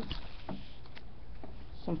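A few faint taps and light handling sounds of small paper cut-outs being picked up from a table, over a steady low background hum; a voice comes in near the end.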